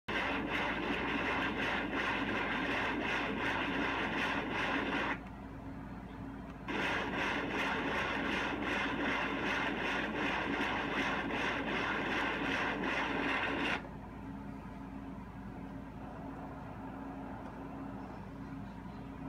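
Ultrasound machine's Doppler audio of blood flow in a young Doberman's heart: a rough whooshing, rasping noise that pulses with each heartbeat, from a dog with a grade 5/6 murmur caused by a patent ductus arteriosus. It drops out briefly about five seconds in, resumes, and stops about fourteen seconds in, leaving a low steady hum.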